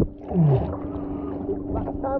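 Muffled water sloshing around a camera at the lake surface, over a steady low hum, with a brief falling tone about half a second in.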